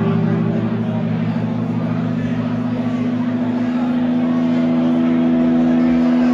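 Amplified electric guitars from a live band holding a loud, sustained droning chord with a fast, even wobble. The lowest note drops out about two-thirds of the way through, and the upper notes ring on.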